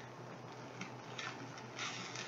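Faint scraping of a metal fork stirring scrambled eggs and hash browns in a small stainless pan, a few soft strokes in the second half.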